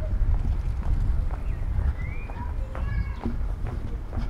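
Footsteps on brick pavement over a steady low rumble, with a few brief high chirps about two and three seconds in.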